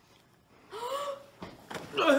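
After near silence, a short, high excited vocal sound like a gasp, rising in pitch and then held, about three-quarters of a second in; more noisy vocal and movement sound builds near the end.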